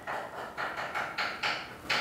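A fast, even rhythm of short taps or clicks, about four or five a second.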